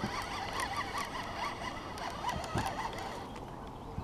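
Shimano Curado baitcasting reel being cranked while fighting a fish on the line: a rhythmic mechanical whir repeating several times a second, with a few sharp clicks.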